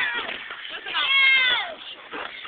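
A cat meowing: one drawn-out meow about a second in, falling in pitch at its end.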